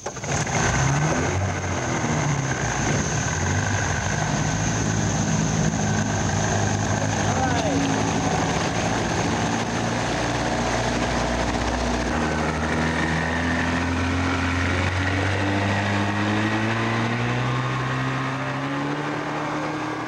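Outboard motor running, its pitch climbing slowly through the second half as the boat gathers speed on the river.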